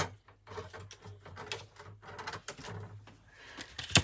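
Light clicks and rustles of die-cut cardstock and the die-cutting machine's cutting plates being handled and separated after a pass through the machine, with one sharp click just before the end.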